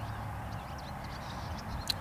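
Quiet outdoor background: a steady low hum with faint, scattered bird chirps.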